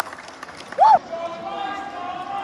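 One short, loud shout from a voice close by, rising then falling in pitch, over the chatter of other voices after a touchdown in a youth American football game.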